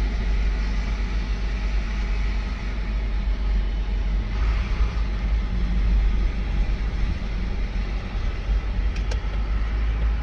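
Road and engine noise heard inside a moving car's cabin: a steady low rumble, with a brief click near the end.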